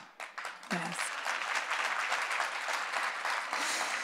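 Audience applauding: scattered claps at first, filling into steady, dense applause about a second in.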